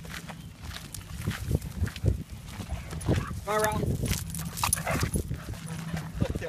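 Footsteps and dogs' paws scuffing and crunching on a gravel path as a pack of dogs is walked: irregular short knocks and scrapes throughout.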